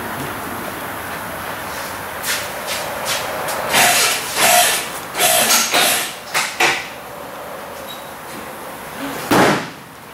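Workshop background noise: a steady hum, broken in the middle by a run of short knocks and clatters and by one louder bang near the end.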